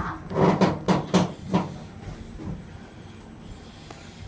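A cable car cabin riding its cable: a quick run of four or five knocks and clunks in the first couple of seconds, then a steady low hum.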